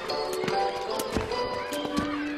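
Background music with held notes, over a quick, even run of sharp taps from a skipping rope slapping the pavement and a child's shoes landing as she jumps; the taps thin out near the end.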